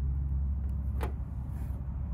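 A single sharp click about a second in, as an alligator test clip snaps onto a resistor lead, over a steady low hum.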